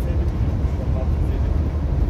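Inside a Neoplan Tourliner coach on the move: a steady low drone of engine and road noise in the cabin, with faint voices over it around the first second.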